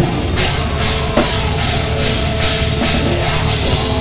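Drum kit played hard in a loud rock song, heard from right beside the kit, with the rest of the band behind it: driving drumming, with a cymbal crash at the start and another hit about a second in.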